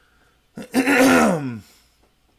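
A man clearing his throat once, about a second long, with a falling pitch.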